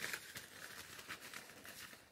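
Faint crinkling of a thin plastic zip-top bag and rustling of paper slips as a hand rummages through them, in soft irregular crackles.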